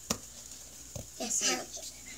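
A sharp slap of a small hand on a cardboard box just after the start and a softer knock about a second in, with a young child's quiet murmur between them.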